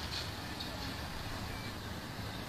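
Faint, steady outdoor street ambience with the low noise of road traffic.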